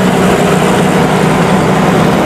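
Steady engine and road noise of a car driving, heard from inside the cabin, with a steady low drone.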